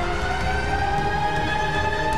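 Arena goal siren sounding to mark a goal: one tone slowly rising in pitch.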